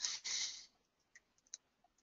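A short breathy hiss, then a few faint computer mouse clicks about a second and a half in.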